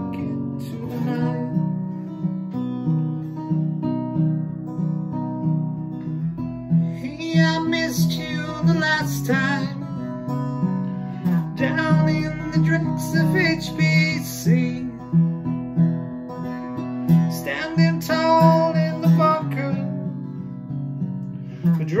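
Acoustic guitar strummed steadily, with a man's singing voice coming in over it in three stretches.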